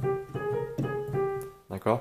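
Digital piano, a Roland, playing the opening of a melody with the right hand, one note at a time: four steady notes in under two seconds, the bare melody without the right-hand harmony written in the score.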